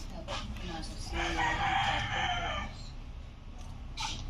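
A single long, loud animal call, lasting about a second and a half and starting about a second in.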